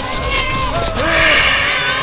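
An infant crying in short, rising-and-falling wails.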